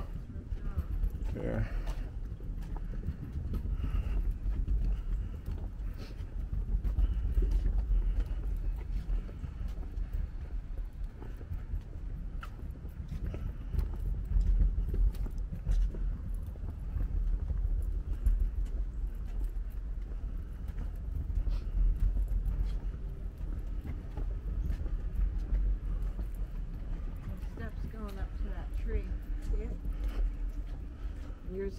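Footsteps walking along a wooden boardwalk, steady footfalls over a low rumble.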